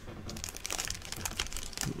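Crinkling plastic and small clicks of trading cards in plastic holders being handled and drawn from a box, starting about a third of a second in.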